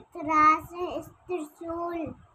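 A child's high-pitched voice chanting a Hindi alphabet word in a sing-song recitation.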